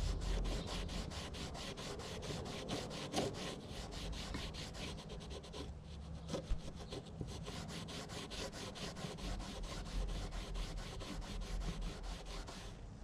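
A cloth rag soaked in wood stain is rubbed in rapid, even back-and-forth strokes over a rough, weathered cedar board, working the stain into the grain.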